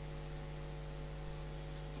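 Low, steady electrical mains hum with a faint hiss under it, unchanging throughout.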